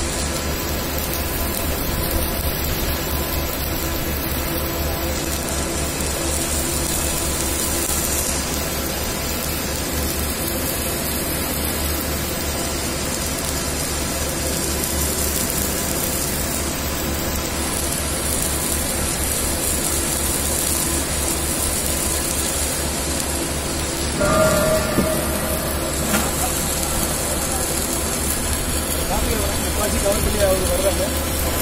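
Steady hum and hiss of a submerged arc welding station running a circumferential weld on a large steel pipe, with a low drone underneath.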